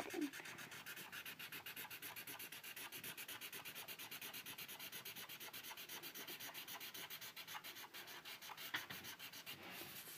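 Black Sharpie marker scrubbing back and forth on paper while colouring in an area, a faint scratchy rubbing in fast, even strokes, several a second.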